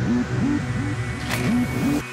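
Yamaha Vixion R 155's single-cylinder motorcycle engine revving in quick repeated blips, its pitch rising and falling about four times a second, with a brief whoosh just past halfway.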